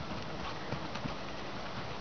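Paso Fino mare's hoofbeats on a dirt footing as she walks under a rider: a few soft, irregular hoof strikes over a steady hiss.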